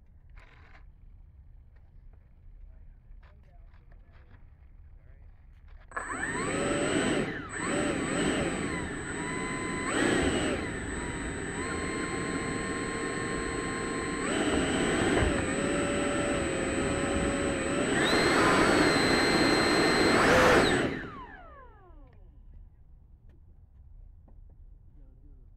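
80 mm electric ducted fan of an RC Avanti S jet spooling up about six seconds in and running at changing throttle, with a steady high whine on top. It spools down, its pitch falling, about three seconds before the end.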